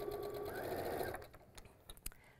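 Electric sewing machine running steadily as it stitches a seam through pieced cotton fabric, then stopping a little over a second in. A small click follows near the end.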